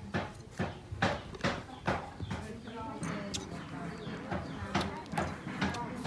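Baby macaque sucking on a milk bottle, making short, wet sucking clicks that repeat steadily about twice a second, with a voice murmuring briefly.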